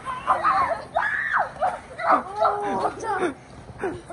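Children shrieking and shouting excitedly while playing, a string of short, high-pitched cries that rise and fall.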